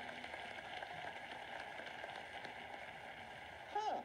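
Studio audience applauding steadily after a solved puzzle, heard through a phone's small speaker.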